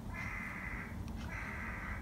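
A bird calling twice in the background: two drawn-out, harsh, flat calls of a little under a second each, back to back.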